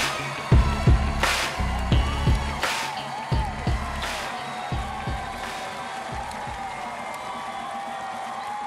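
Hip-hop backing track with heavy kick drums and a snare about every second and a half, fading out over the first five seconds or so, under faint arena crowd clapping and cheering.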